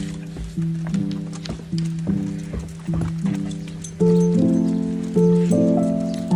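Background music: chords struck in a steady rhythm, growing fuller with higher notes from about four seconds in.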